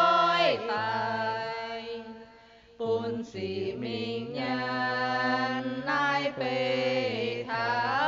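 A man and a woman singing a slow hymn together in long held notes, his voice low beneath hers, with a brief pause between phrases a little past the middle.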